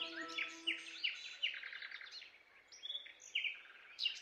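Birds chirping: a quick run of short, downward-sliding notes, about five a second, for the first two seconds, then a few higher, separate notes near the end.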